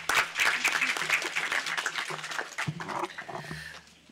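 Audience applauding in a large conference hall, the clapping thinning out and dying away near the end.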